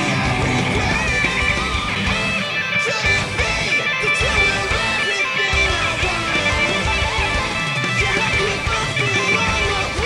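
Jackson Soloist electric guitar playing a distorted lead line, with pitched notes that glide in bends and slides, over a full metal band track whose low end drops out briefly a few times.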